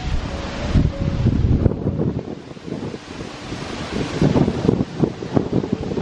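Strong, gusty windstorm wind buffeting the microphone in heavy rumbling gusts, easing briefly a couple of seconds in before picking up again.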